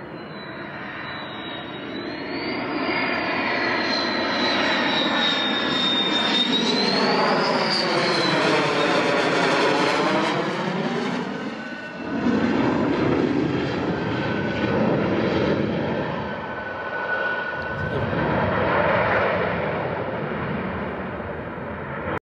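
Dassault Rafale's twin Snecma M88 jet engines on landing approach with gear down: a high whine over a steady jet rush that swells as the fighter comes overhead, with a sweeping, phasing tone at its loudest about halfway through. The sound changes abruptly twice later on as the jet noise goes on.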